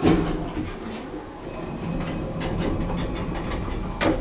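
2000 Thyssen passenger elevator: a loud clunk, then a steady rumbling and rattling from the car and its sliding doors as the doors open, with a second clunk near the end.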